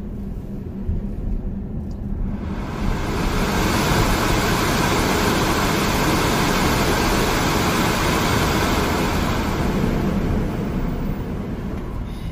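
Car cabin noise while driving: a steady low rumble from engine and road, with a rushing hiss that swells in about two seconds in and eases off near the end.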